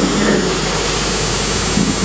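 Steady hiss with a low hum underneath: background room and recording noise with no speech.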